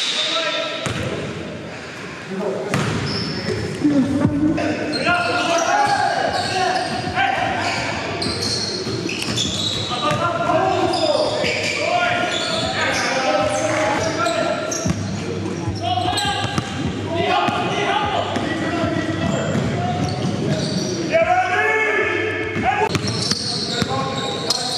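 Game sounds of basketball on a hardwood gym floor: the ball bouncing, with players' voices calling out, echoing in a large hall.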